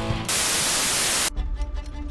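A steady burst of hiss like TV static that cuts off sharply, followed by rapid clock ticking over a held musical tone: cartoon sound effects over a soundtrack.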